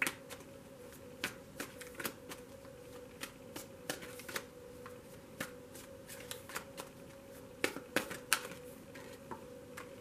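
A deck of tarot cards being shuffled by hand, the cards clicking and flicking against each other in irregular sharp ticks, a few a second. A faint steady hum lies underneath.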